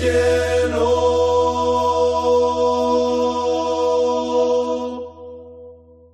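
The closing chord of a rondalla song, held steady over a deep bass note and fading away about five seconds in as the piece ends.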